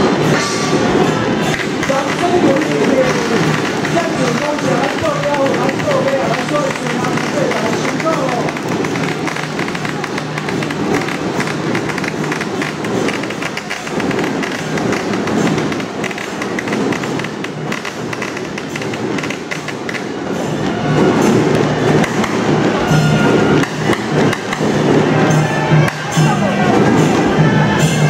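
Taiwanese temple procession band: a suona (Chinese shawm) plays a wavering melody over rapid gong and cymbal strikes, with crowd voices mixed in. The shawm melody fades after the first several seconds while the gongs and cymbals keep going, swelling louder near the end.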